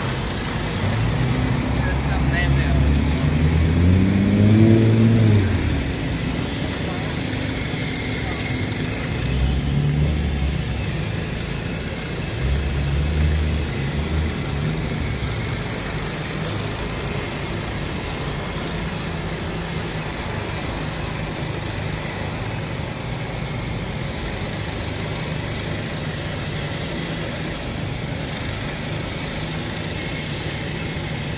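Road traffic: a vehicle engine rising in pitch over the first few seconds, more rumble later, then a steady hum of traffic.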